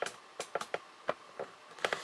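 Several light, irregular clicks and knocks: handling noise from a camera being tilted and adjusted by hand.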